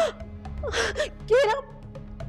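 A woman's voice gasping and whimpering in short, breathy cries, three of them in two seconds, over a low steady music drone.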